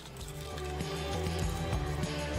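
Background music with a steady bass line, fading in over the first second.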